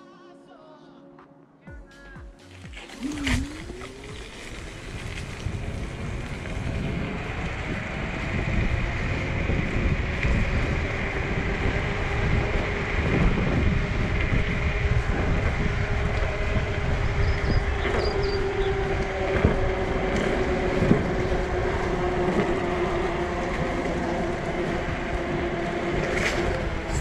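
Electric scooter's dual hub motors whining under full throttle on a hill climb, the pitch gliding up about three seconds in as it gathers speed and then holding steady, over rushing wind and road noise.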